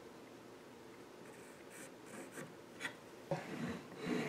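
Pencil lead scratching short strokes across wood as a line is marked, then a sharp knock and some handling of the clamped pieces near the end.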